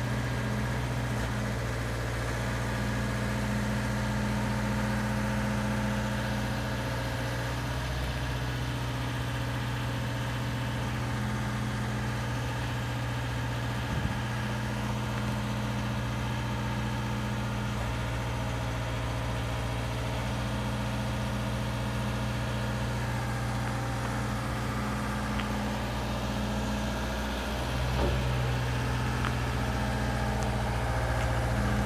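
JLG 80-foot boom lift's engine running steadily at a constant speed, a low even hum, likely working the hydraulics as the boom is raised.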